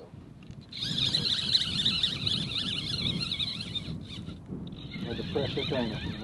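Fly reel's drag buzzing as a hooked bonefish pulls line off, a high wavering whir that starts under a second in and stops about four seconds in.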